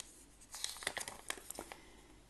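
A small folded paper note being unfolded by hand, crinkling in a quick run of soft crackles that starts about half a second in and stops just before the end.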